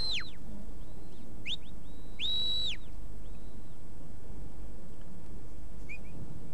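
Sheepdog handler's whistle commands: a short rising whistle about a second and a half in, then a stronger, longer note that rises, holds and falls away at about two and a half seconds, with a few fainter brief whistles.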